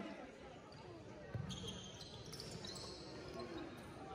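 Basketball bouncing on a hardwood gym court, one clear bounce about a second and a half in, over indistinct voices in the gym.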